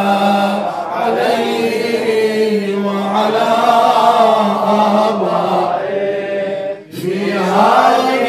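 A man chanting a supplication (du'a) in long, drawn-out melodic phrases, pausing briefly for breath about seven seconds in.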